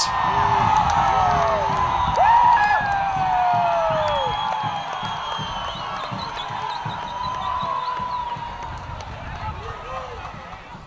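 A small football crowd cheering and shouting to celebrate a goal, with whoops and long drawn-out calls sliding up and down in pitch. Loudest in the first few seconds, then gradually dying down.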